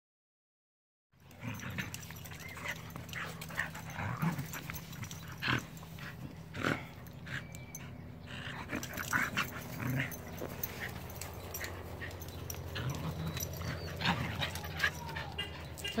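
Dogs at play, a German Shepherd-type dog and small white spitz-type dogs tugging at a toy: scattered short growls and scuffles over a steady low hum. It begins after about a second of silence.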